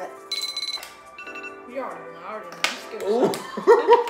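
A timer alarm ringing briefly as a fast trill of high beeps about a third of a second in, with a shorter tone just after a second: the countdown running out. Background music plays underneath, and voices and laughter grow loud near the end.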